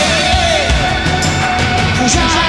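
Live rock band playing a dark synth-rock song: a wavering held note rides over sustained synthesizer chords and a steady, heavy drum beat.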